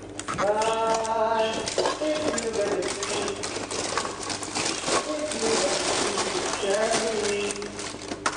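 A voice holds a sung note for about a second and a half near the start. People then talk and hum over a busy crackle of clicks and rustling from paper bags being handled.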